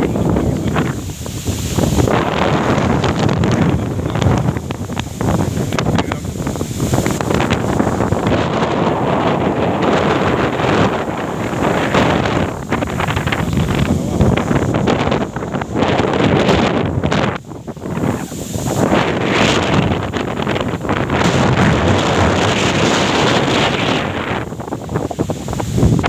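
Loud wind buffeting a phone's microphone: a rough rushing rumble that swells and fades in gusts, with one brief lull about two-thirds of the way through.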